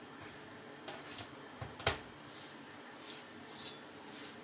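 Metal kitchenware clinking: a few light knocks and one sharp clink about two seconds in.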